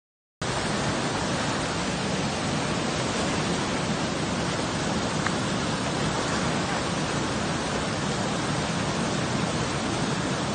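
Fast-flowing mountain river rushing over rocks: a steady, even rush of white water that starts abruptly about half a second in.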